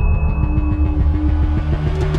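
Heavy rock music with a low, distorted riff, the notes changing in a driving rhythm. A steady high tone left over from the calm music before it cuts off about a second in.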